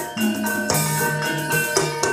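Javanese gamelan music accompanying ebeg dancing: struck metallophones ring out held notes in a steady rhythm, with drumming and jingling percussion.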